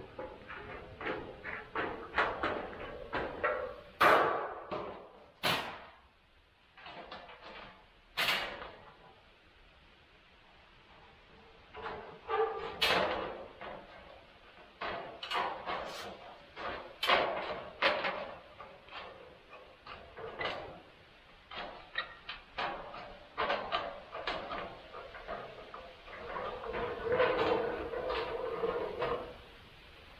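Tin snips cutting 26-gauge galvanized steel sheet: an irregular run of sharp snipping clicks as the jaws close stroke after stroke, a few much louder than the rest, with a lull of a few seconds about a quarter of the way through.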